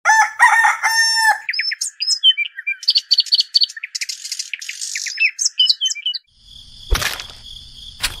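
A rooster crowing, then small birds chirping in quick, repeated calls. Near the end the birdsong stops, a single click sounds, and a steady high-pitched hum sets in.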